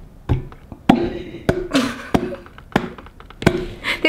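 A series of about seven dull knocks, roughly two every second and a bit, as a container holding a kombucha SCOBY is tapped and jolted against a hand to shake the stuck SCOBY loose.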